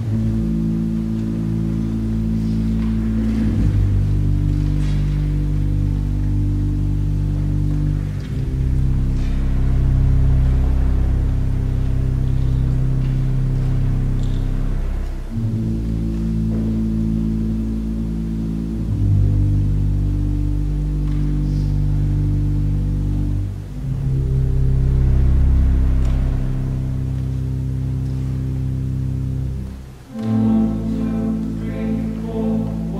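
Pipe organ playing slow, sustained low chords over a deep pedal bass, the harmony changing every few seconds; the same progression comes round twice. It cuts off abruptly at the end.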